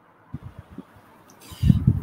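A few soft low knocks, then a louder muffled thump with a short hiss near the end.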